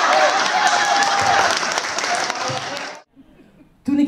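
Theatre audience applauding, with one voice calling out over the clapping; the applause cuts off abruptly about three seconds in.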